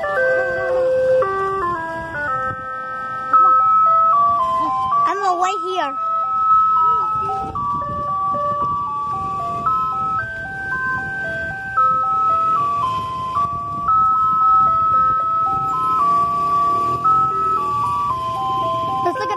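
Ice cream truck's chime jingle playing a simple melody of clear single notes that step up and down, loud and continuous.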